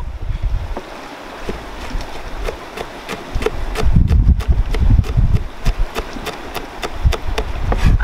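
Large kitchen knife chopping chilies on a plastic cutting board: a steady run of sharp taps, a few a second, under a low rumble of wind on the microphone.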